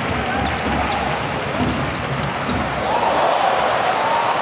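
Live basketball game sound in an arena: a ball bouncing on the hardwood court and sneakers squeaking over steady crowd noise, the squeaks strongest near the end.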